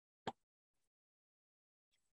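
Near silence, broken by one short, sharp click about a quarter of a second in.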